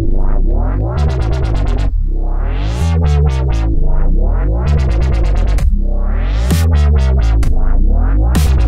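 Dubstep wobble bass synth playing back from FL Studio, a sustained deep bass whose filter sweeps open and shut in repeated rising and falling swells. A kick drum comes in once, about six and a half seconds in.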